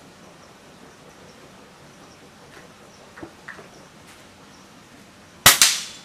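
An air rifle fired once about five and a half seconds in: a sharp, loud crack with a second short knock right behind it. A few faint clicks come a couple of seconds before the shot.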